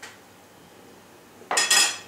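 Metal cutlery clinking against a ceramic plate: a faint tick at the start, then a louder, ringing clatter about one and a half seconds in as the knife and fork are put down.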